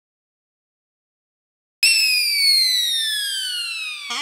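Dead silence for nearly two seconds, then a loud whistle-like tone that starts suddenly and slides steadily down in pitch for about two seconds, like a comic falling-whistle sound effect. It cuts off abruptly at the end, followed by a brief lower blip.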